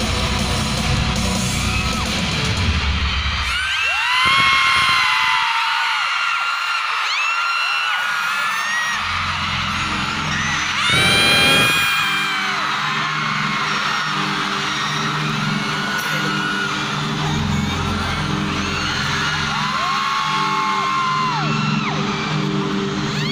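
Arena concert: amplified music with a deep beat plays over a large crowd of fans screaming and cheering in high voices. The bass drops out for a few seconds about four seconds in, then comes back.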